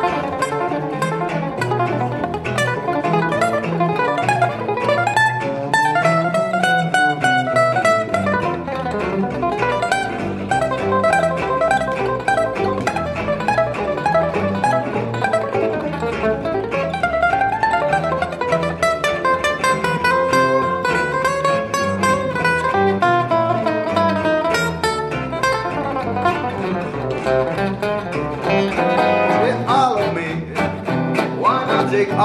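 Gypsy jazz trio playing: a lead solo of fast single-note runs on a Selmer-Maccaferri-style acoustic guitar, over plucked double bass and a strummed rhythm guitar keeping a steady beat.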